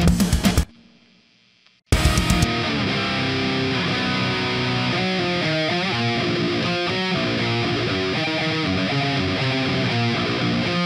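Distorted electric guitar playing a heavy metal riff through a Wizard 50-watt amp head and an early-70s Marshall cabinet with Vintage 30 speakers. The guitar cuts out for about a second near the start, then comes back in as a steady stream of chords.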